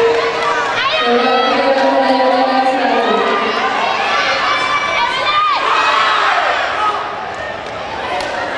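Spectators at a pencak silat match cheering and shouting as the fighters clash, many voices overlapping with high yells; it eases off near the end.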